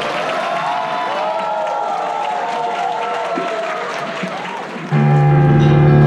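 Audience applauding, with several voices calling out over it as the piece ends. About five seconds in, much louder music with held notes and a strong steady bass note suddenly starts.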